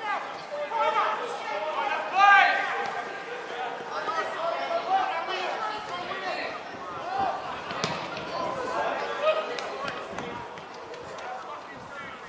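Shouting from players and coaches on a football pitch, the voices distant and indistinct, with one loud call about two seconds in. A few sharp knocks are heard a little past the middle.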